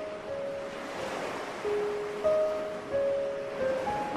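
Ocean surf washing in as a soft, even rush that swells about a second in, under slow, soft music with long held notes.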